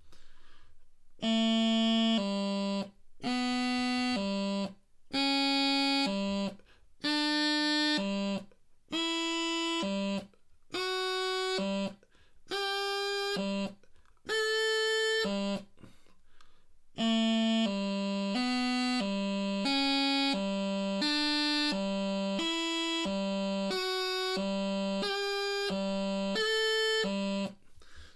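Bagpipe practice chanter playing a low G accuracy exercise: pairs of notes, each a step higher up the scale and dropping back to low G, with short pauses between pairs. About two-thirds of the way in it becomes a continuous run, about two notes a second, alternating between low G and higher notes.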